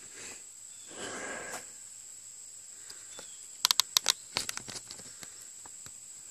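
Steady high insect buzz from the surrounding woods, with a quick run of sharp clicks and knocks about halfway through.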